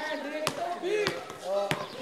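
A ball game on a hard outdoor court: a ball strikes sharply twice, about half a second in and near the end, over overlapping shouts and chatter of young players.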